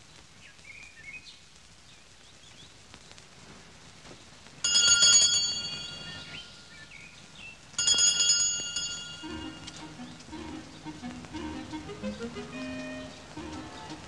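A bell rings twice, about three seconds apart, each ring sudden and then fading. A softer, wavering lower sound, likely film music, follows.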